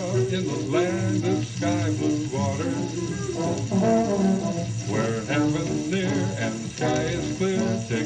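Old-time band music with brass instruments playing, between sung verses.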